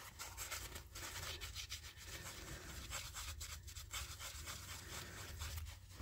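Faint, irregular rubbing and rustling of a cloth shop rag being wiped and handled to clean off metal polishing compound.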